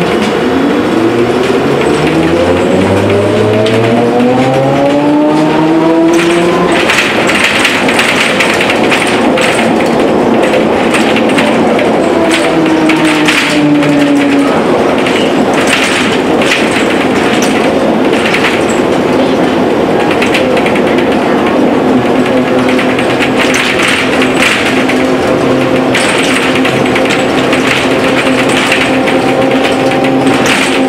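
Ikarus 280 trolleybus's electric traction motor whining and rising steadily in pitch over the first several seconds as the bus accelerates, with the body rattling and clattering. A shorter falling whine follows around the middle as it slows, then a steady hum holds.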